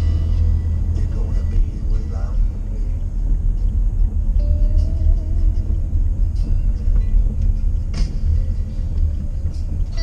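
Steady low road-and-engine rumble inside a moving car's cabin, with music playing over the car stereo and a singing voice heard faintly above it. A sharp click comes about eight seconds in.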